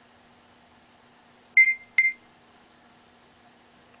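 Two short, high electronic beeps about half a second apart, near the middle: an iPhone's RedLaser barcode-scanner app signalling a successful scan.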